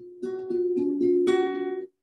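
Acoustic guitar being plucked, several notes in quick succession ringing over one another, the opening of a song. The sound cuts off abruptly just before the end, heard over a video call.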